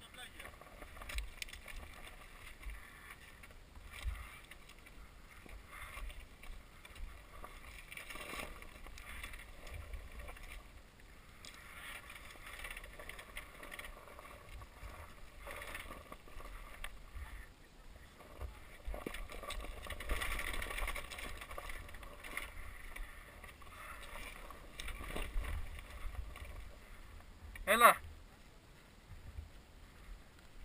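Dirt bike rolling slowly down a rocky trail, heard from a helmet camera: a steady rumble and scuffing with scattered knocks and rattles over the stones, with wind on the microphone. A brief loud shout near the end.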